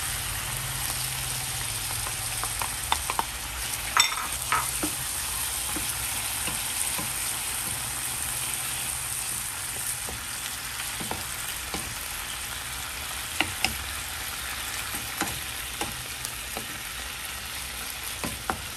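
Chicken pieces sizzling in oil in a pan with soy sauce just poured over them, a steady sizzle. A wooden spoon stirring them clicks and scrapes against the pan now and then, sharpest about four seconds in.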